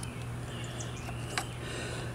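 Quiet outdoor background with a steady low hum and one faint click about one and a half seconds in.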